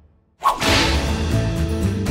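Near silence, then about half a second in a sudden, sharp whip-crack swish sound effect, followed at once by the start of the end-credits music.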